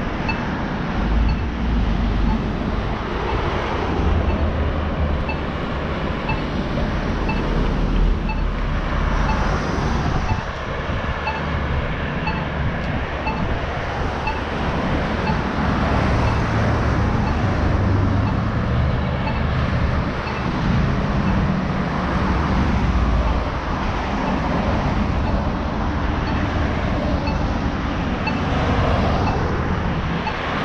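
Road traffic on a multi-lane street: cars passing in a steady stream, their engines and tyres making a low rumble that swells and eases as they go by. A faint tick repeats at an even pace throughout, about one and a half times a second.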